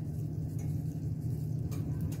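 A steady low hum with no distinct events.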